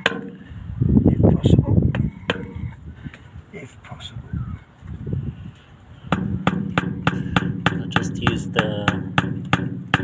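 Claw hammer striking the handle of a screwdriver held as a chisel against a glued PVC pipe fitting, chipping off its outside. Scattered taps at first with a louder rough noise about a second in, then a fast run of sharp taps, about five a second, from about six seconds in.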